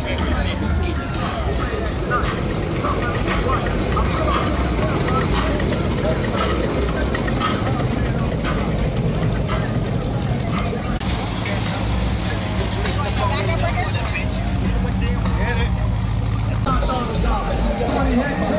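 Lowrider cars running as they roll slowly past, mixed with music and people's voices. A steady low hum sits under it from about eleven seconds in until it changes shortly before the end.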